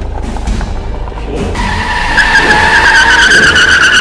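Car tyres screeching: a loud, high squeal starts about halfway through over a low road rumble and cuts off suddenly at the end.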